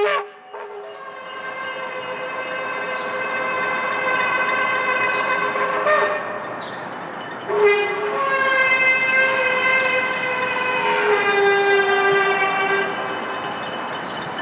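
Ram's-horn shofar sounding long, sustained blasts over a steady background of noise. The pitch steps and the blasts break off and restart a few times, at about six, seven and a half and eleven seconds in.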